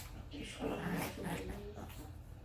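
Several small dogs play-fighting and vocalising, loudest around the middle.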